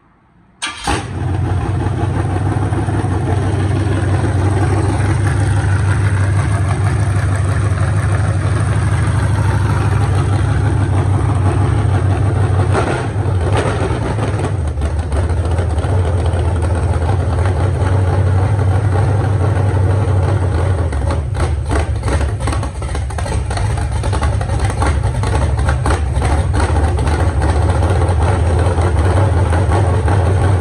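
Blueprint 383 stroker small-block Chevy V8 on an engine run stand, fired through open headers: it catches about a second in and settles into a loud, choppy idle. The level wavers briefly a couple of times midway.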